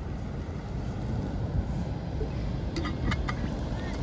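Steady low rumble of wind buffeting the microphone on open water, with a few sharp clicks about three seconds in.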